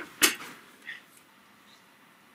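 One sharp clack as a metal loaf pan is handled on a gas stove's grate, followed by a faint tap about a second in, then quiet room tone.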